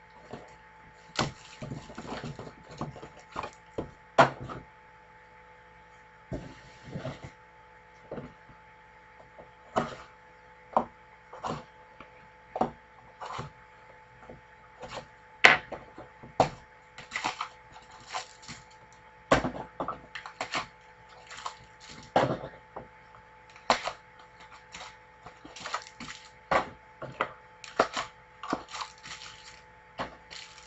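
Hands handling trading cards, card packs and a cardboard box on a tabletop: irregular clicks, taps and rustles of differing loudness, with no steady rhythm.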